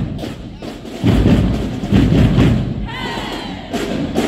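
High school marching band drumline playing a street cadence, with heavy bass drum hits about a second and two seconds in.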